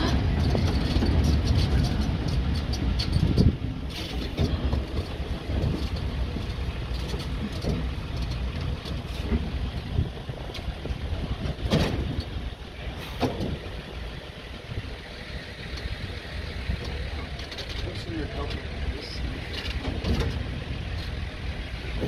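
Outdoor city ambience: a steady low rumble, loudest for the first three seconds or so, with a couple of brief sharp knocks near the middle.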